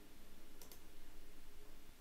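A faint computer mouse click, heard as a quick double tick about two-thirds of a second in, as a menu item is selected, over low room noise.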